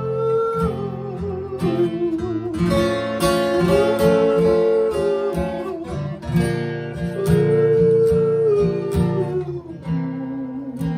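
Acoustic guitar strummed at a slow, steady pace under a wordless vocal melody of long held notes that rise and fall in three phrases.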